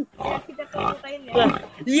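Pig grunting sound effect: several short, rough grunts in quick succession.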